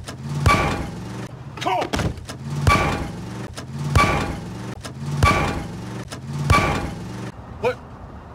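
A heavy metallic thud with a short ring, repeated six times about every 1.2 seconds as the same film moment loops. Each thud is followed by a brief vocal sound, over a steady race-car engine drone.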